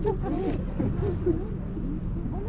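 Overlapping far-off voices of people chatting, with no single near speaker, over a steady low rumble.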